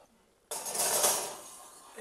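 Glass baking dish sliding onto a metal oven rack: a sudden scraping rattle about half a second in that fades away over the next second and a half.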